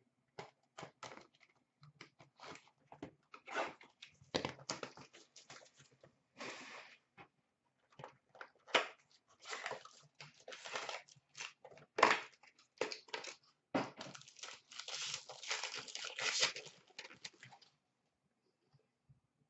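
Trading-card packs and their box being torn open by hand: a string of crinkling and sharp crackles of wrapper and cardboard, with a longer rip about six seconds in and a dense stretch of crinkling near the end.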